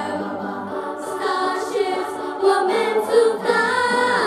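A group of young students singing together in chorus over accompanying music, amplified on a stage sound system.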